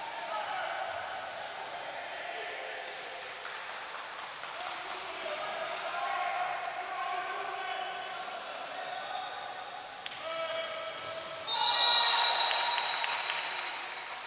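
Live water polo sound echoing in an indoor pool hall: voices calling and shouting over splashing water, with a louder burst of sound about eleven seconds in as a goal is scored that fades away by the end.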